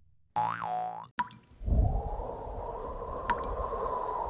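Sound effects for an animated logo intro: about half a second in, a short boing whose pitch rises then falls, a sharp click just after a second, then from about a second and a half a steady rushing whoosh.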